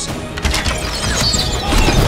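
Dramatic film-trailer score with sound-design hits: a heavy crashing impact about half a second in, and more crashing under the music after it.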